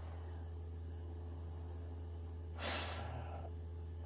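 A person's single short exhale through a face mask, about two-thirds of the way in, over a steady low hum.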